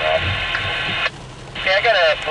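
Railway radio traffic on a scanner: a thin, band-limited hiss of an open channel cuts off abruptly about a second in, then another voice transmission comes on near the end.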